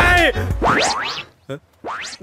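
Cartoon comedy sound effect: quick rising whistle-like pitch glides, one just after music and a voice cut off about half a second in and a second one near the end, with a near-silent gap between them.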